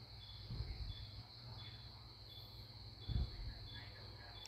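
Faint background noise: a steady high hiss with a short high chirp repeating about once a second, and two soft low thumps, about half a second and about three seconds in.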